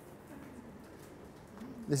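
Quiet room with only faint low background sound. Near the end a man's voice starts speaking.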